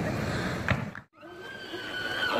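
A high-pitched human vocal cry, held on one note, starts about a second in after a short break in the sound. Before it there is only background noise.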